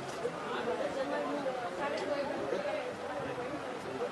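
Several people talking at once: steady, overlapping chatter with no single clear voice.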